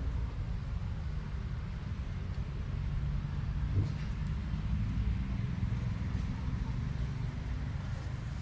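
Steady low outdoor rumble with no clear voice or pitched sound, and one faint click about four seconds in.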